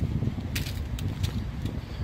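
Wind rumbling on the microphone, with a few light clicks scattered through it.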